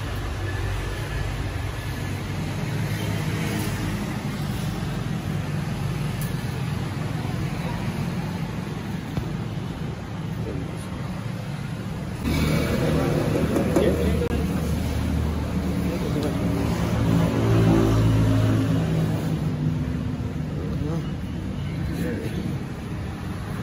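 An engine running steadily at a low, even pitch, growing louder about halfway through, with people talking in the background.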